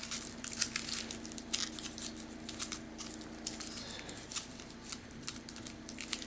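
Aluminium foil crinkling in quick, irregular crackles as it is squeezed and wrapped around a wire armature to bulk it out, over a faint steady hum.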